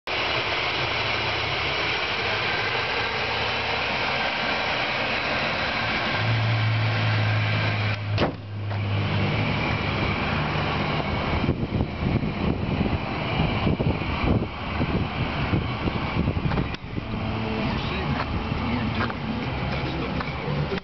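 Buick 3800 Series II V6 engine idling with a steady hum. There is a sharp click about eight seconds in, and irregular rustling and knocks over the hum in the second half.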